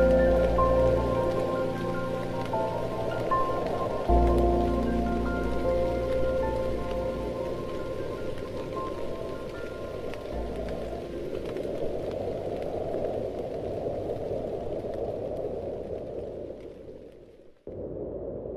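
Steady rain falling under soft instrumental music, whose held notes fade away over the first half while the rain carries on. Shortly before the end the sound dips almost to nothing, then picks up again.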